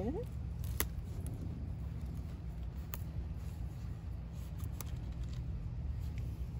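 A knife cutting through a thick broccoli stalk at harvest: a few short, sharp crunching clicks, the clearest about a second in and another a couple of seconds later, over a steady low rumble.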